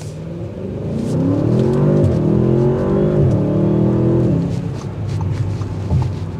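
Audi S8's twin-turbocharged 4.0-litre V8 under full-throttle acceleration from a standstill, heard from inside the cabin. The engine note rises in pitch, drops back twice as the transmission shifts up, then eases off near the end.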